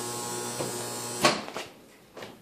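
Microwave oven running with a steady electrical hum; about a second in its door is popped open with a loud clunk and the hum cuts off, followed by a couple of lighter clicks.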